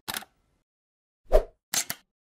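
Sound effects of an animated logo intro: a brief tick at the start, a louder pop about one and a third seconds in, then two quick clicks near the end.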